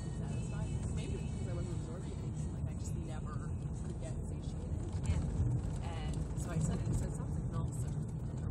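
Steady low rumble of a car's engine and tyres heard from inside the cabin while driving, with faint, indistinct talk over it.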